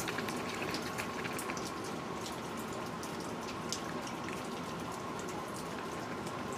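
Steady outdoor background hiss with faint scattered ticks and a faint, steady high hum.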